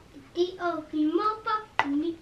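A young child's high voice talking or babbling in short phrases, with one sharp click about two seconds in.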